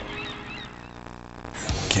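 A low sustained drone note, rich in overtones and horn-like, fading out as a TV channel ident ends. About one and a half seconds in, a sudden loud burst of sound cuts it off as the next promo begins.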